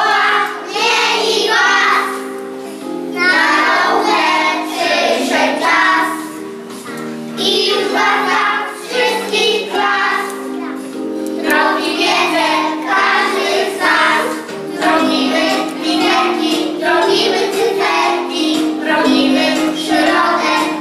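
A group of young children singing a song together over instrumental accompaniment, in phrases with short breaks between them.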